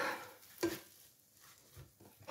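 A spatula working under a cooked egg omelette in a nonstick frying pan: a short scrape about two-thirds of a second in and a tiny one near the end, with quiet in between.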